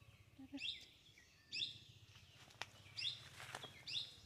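A bird calling in the undergrowth: a short high call given four times, roughly a second apart, each sliding down in pitch.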